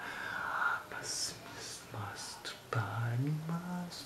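A man whispering breathily, with sharp hissing consonants, then starting a low hummed note near the end that steps up in pitch.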